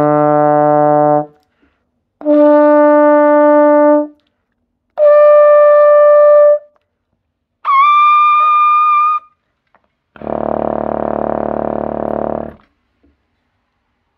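Trombone playing four sustained notes in turn, each an octave above the last, with the highest scooping up into pitch at its start, then one very low, rough note whose loudness flutters. It shows an even tone carried from a low register up to a high one.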